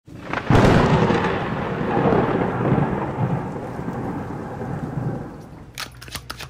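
A thunderclap with rain: a sudden loud crack about half a second in, then a rolling rumble that slowly fades away over the next five seconds.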